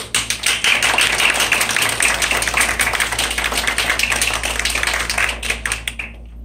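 Audience applauding. The clapping starts suddenly and thins out near the end.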